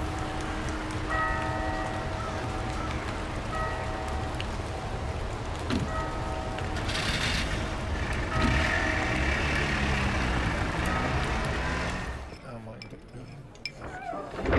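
Steady rain with a low rumble, over which a short chord of steady tones recurs about every two and a half seconds; later, voices murmur, and the rain sound drops away suddenly near the end.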